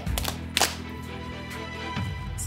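Background music with steady low notes, with two sharp clicks about half a second apart in the first second.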